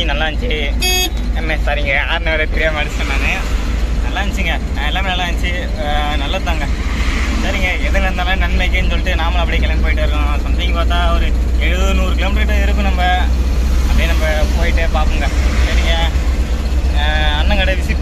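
A man talking almost without pause over the steady low drone of the vehicle, heard from inside the cabin. A brief sharp click about a second in.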